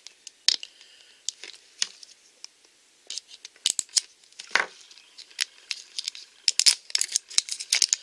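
Crinkling plastic shrink-wrap on a Pikmi Pops surprise package as it is handled and cut open: irregular sharp crackles and clicks, sparse at first and coming thick and fast near the end.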